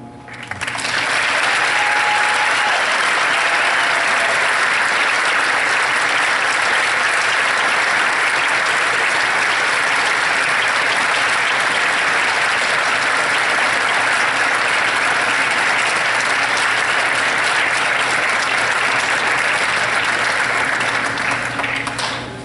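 Audience applauding steadily after the band's final note, starting about half a second in and tailing off near the end.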